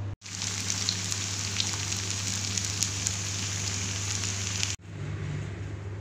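Lauki and chana dal kebabs deep-frying in hot oil: a steady sizzle with scattered small crackles, cut off suddenly near the end.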